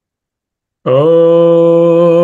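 A man's voice begins a Sanskrit chant, holding one long, steady note from just under a second in.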